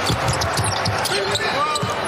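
Basketball being dribbled on a hardwood court, with repeated thumps, under players' voices calling out across the court.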